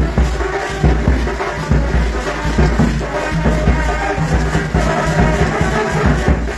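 Music with a steady drum beat, a little over one beat a second.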